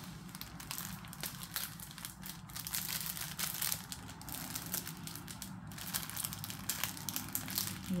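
Plastic packets of diamond-painting drills crinkling and crackling as they are handled, an irregular run of small crackles.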